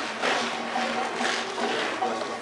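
Indistinct background voices of people nearby over a steady outdoor hubbub, with no single loud event.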